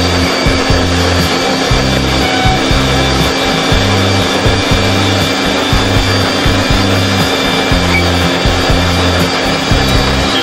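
Electric juice blenders running with fruit juice in their jars, a steady grinding whir with a motor hum. Background music with a repeating bass line plays over it.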